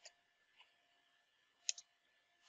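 Faint computer keyboard keystrokes: a few scattered key clicks, with two quick ones close together near the end being the loudest.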